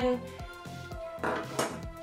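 Background music at a steady low level, with a short rustle of plastic kitchen-gadget parts being handled a little past the middle.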